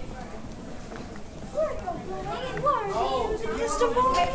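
Indistinct young voices chattering and calling out, louder and more animated from about a second and a half in.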